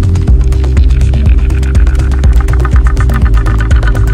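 Electronic dance music in the melodic-techno style, with deep sustained bass and a steady droning synth under quick, even hi-hat ticks. A synth sweep falls in pitch in the middle, and a pulsing synth pattern comes in over the second half.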